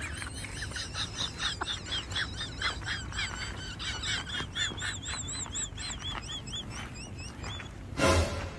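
A bird calling: a long run of short, high chirps, rapid at first, then thinning out into separate arched notes toward the end.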